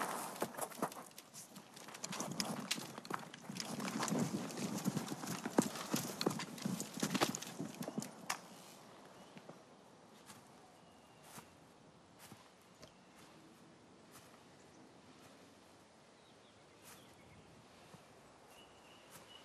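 Horse's hooves clip-clopping, busy through the first half and then thinning to a few scattered, fainter steps.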